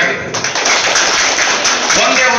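Audience clapping, starting about a third of a second in and keeping on as a dense, even patter of many hands.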